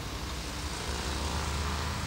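A steady low hum under a hiss, the hum growing a little louder about a second in: the background noise of an old videotape soundtrack.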